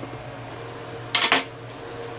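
Cutlery clinking against ceramic dishware: a short clatter of a few quick knocks just over a second in. A steady low hum runs underneath.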